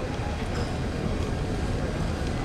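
Steady, low rumbling room noise of a large conference hall with a seated audience of several hundred, with no distinct event standing out.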